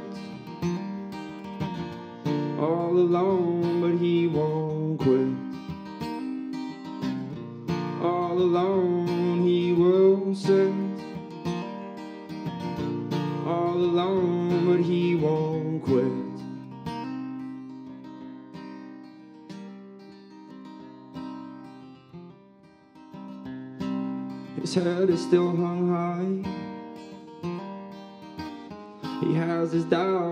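Martin acoustic guitar played through an instrumental stretch of a folk song, with a man singing over parts of the first half. Around twenty seconds in the guitar drops quieter, then it comes back louder with strummed chords near the end.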